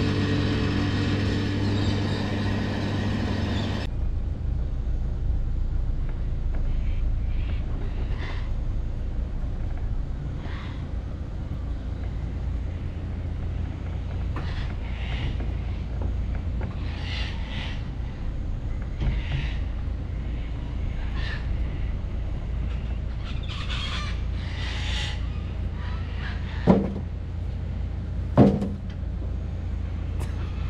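Car engine running at low speed, a steady low rumble, as it reverses a boat trailer down a riverbank, with short high chirps now and then and two sharp knocks near the end. The first few seconds hold a steady chord of tones that cuts off abruptly.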